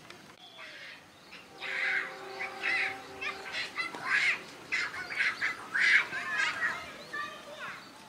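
Voices shouting in short bursts during a football match, starting about a second and a half in and going on for several seconds, with bird calls in the background.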